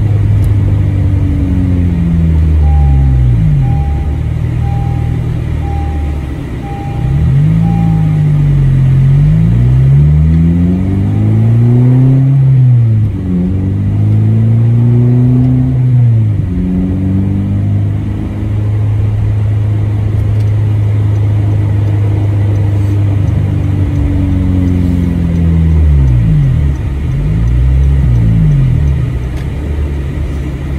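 Four-cylinder engine of a 2008 Honda Civic Si with a manual gearbox, heard from inside the cabin while driving: its pitch rises and falls three times as the car speeds up and slows, with a steady low drone in between. A faint beep repeats for a few seconds near the start.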